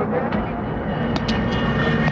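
Bus engine running, a steady low drone.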